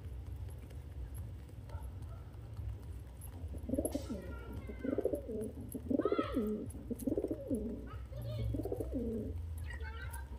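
Domestic pigeons cooing: a run of about six low coos, roughly one a second, starting about four seconds in.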